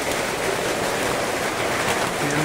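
Steady rain falling on a corrugated metal roof, heard from underneath as an even hiss.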